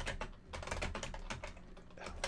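Rapid typing on a computer keyboard: a quick, continuous run of key clicks.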